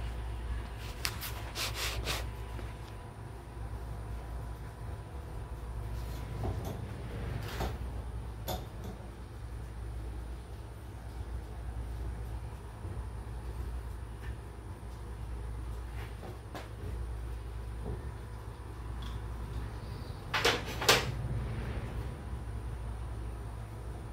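Scattered knocks and clicks from plastic drum fittings and tools being handled, with the loudest pair of clunks near the end, over a steady low rumble.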